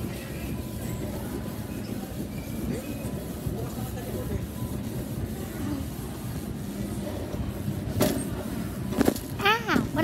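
Shopping cart rolling across a hard floor, a steady low rumble and rattle from its wheels and wire basket, with two sharp jolts about eight and nine seconds in as it goes over a big bump. A high-pitched voice starts just before the end.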